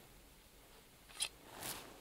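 Near-quiet room tone with a single faint, sharp click just over a second in and a brief soft rustle near the end.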